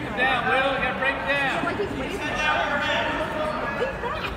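Voices shouting in a large gym, in two main bursts in the first three seconds, calling out to wrestlers during a bout.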